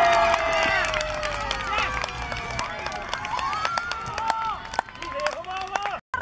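Voices cheering a goal: one long drawn-out shout that slowly falls in pitch and fades out about two and a half seconds in, with other shorter yells over it and scattered claps.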